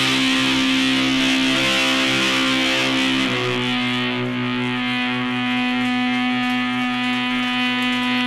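Live rock band's electric guitar and bass holding a sustained, ringing chord, changing to another held chord about three seconds in and ringing on.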